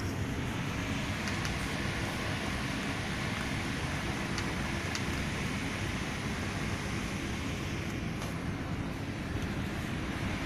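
A steady rushing noise with a heavy low rumble, and a few faint ticks in the first half.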